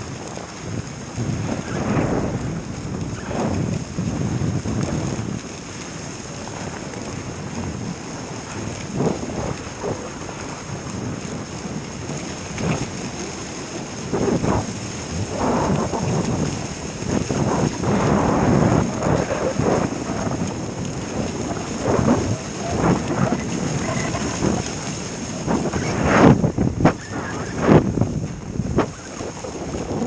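Dog sled moving along a packed snow trail: the runners scrape and hiss over the snow with uneven bumps and knocks, a few sharper jolts near the end, and wind buffeting the microphone.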